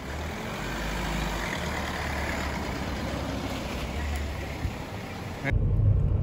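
A Hyundai Verna sedan's engine runs with a low rumble as the car creeps slowly forward. Near the end the sound cuts suddenly to the louder, deeper drone of engine and road noise inside the moving car's cabin.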